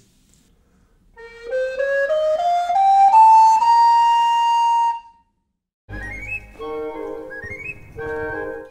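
Wooden recorder playing an ascending B melodic minor scale over one octave, about eight notes stepping up, the top note held for about a second and a half. About six seconds in, a short music cue with a low thump and quick rising figures begins.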